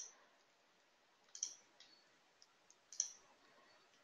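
Three faint computer mouse clicks, about a second and a half apart, in near silence.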